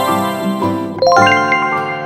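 Children's background music with a bright, ringing chime effect that comes in about a second in and fades out slowly.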